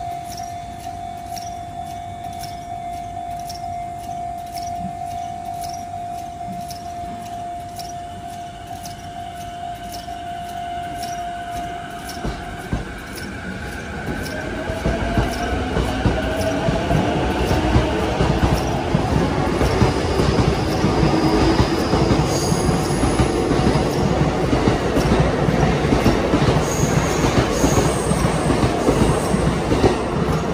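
JR E233-series electric train pulling out of a station. A steady tone holds for about the first twelve seconds. From about halfway the traction motors whine, rising in pitch as it accelerates, over wheel and rail rumble that grows louder as it passes.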